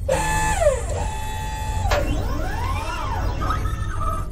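Electronic sci-fi sound effects over a steady low rumble. Pitched tones fall at the start, one tone holds for about a second, and then several tones swoop up and down together before settling on a short held bleep near the end.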